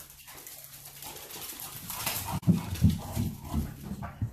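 Puppies play-wrestling on a tile floor, with dog noises and scuffling. From about halfway there is a quick run of several low thumps.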